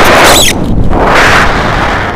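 Wind rushing over the camera microphone during a tandem paraglider flight: loud, buffeting, with surges, a short burst about half a second in and a slight easing near the end.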